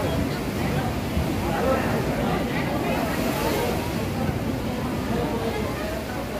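Sea waves surging and breaking against the rocks at a sea cave's mouth: a steady rushing wash, with indistinct voices of people talking underneath.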